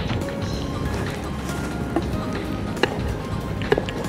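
Background music, with a few sharp taps of a kitchen knife striking a wooden cutting board as red chili is sliced, about two, three and nearly four seconds in.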